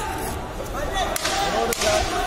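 Voices shouting around the cage, with two sharp slaps or cracks, one a little after a second in and one near the end.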